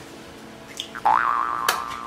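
A comedic sound effect laid over a reaction shot. About a second in, a pitched tone swoops upward and then holds level for most of a second, with a sharp click near its end.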